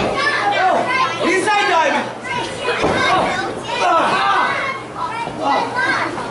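Ringside crowd with many children shouting and calling out over one another in a hall, voices overlapping throughout.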